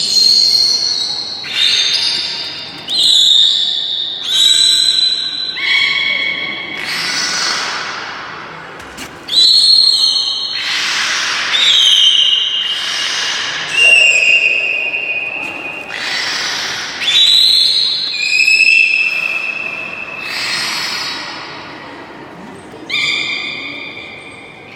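Beluga whale vocalizing in air: a long run of about fifteen loud, high whistles and squeals, each about a second long, some held steady and some falling in pitch, several with a raspy edge.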